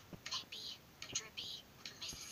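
Quiet, whispery cartoon dialogue from a television, mostly short hissing consonants with little full voice behind them.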